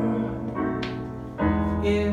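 Slow piano accompaniment holding sustained chords between sung lines, with a new chord struck about two-thirds of the way in.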